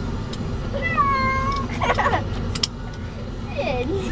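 A domestic cat meowing in distress inside a moving truck cab: one long, drawn-out meow about a second in, then shorter cries, over the truck's steady low rumble.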